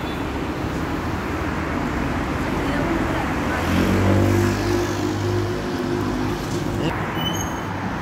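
Road traffic noise on a city street, with a motor vehicle's engine hum swelling as it passes from about three and a half seconds in, loudest near four seconds, and fading by seven seconds.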